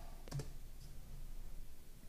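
A few faint clicks of a computer keyboard and mouse, the clearest about a third of a second in.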